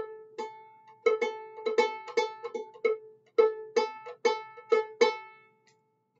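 Viola pizzicato: a quick run of plucked A notes, about four a second, the fourth-finger A sounded against the open A string to check that the two are the same pitch.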